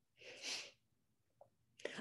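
A woman's short, unvoiced breath, a single puff of air about half a second long, followed by near silence.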